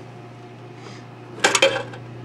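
A short cluster of sharp metallic clicks about one and a half seconds in, as pliers bend out a metal flange of a knockout seal plug fitted in an electrical panel's knockout hole, over a faint steady hum.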